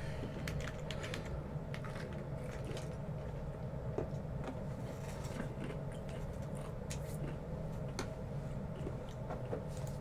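Steady low room hum with a few faint, scattered clicks.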